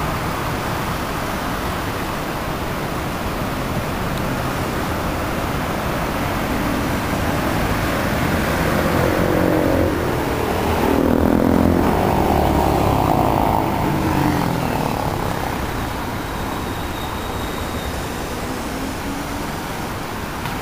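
Steady city road-traffic noise, with a motor vehicle passing close by in the middle: its engine grows louder, is loudest for a few seconds, then fades.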